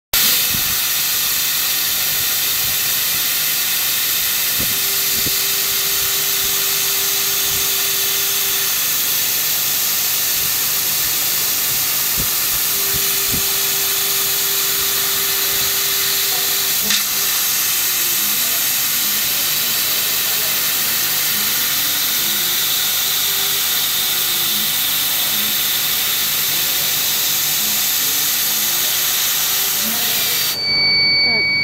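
Laser cutter cutting 12 mm pine: a loud, steady hiss of compressed air blowing through the cutting nozzle. Under it a faint motor whine from the moving head holds one pitch along straight cuts, then rises and falls over and over while it traces a circle, with one click about halfway through.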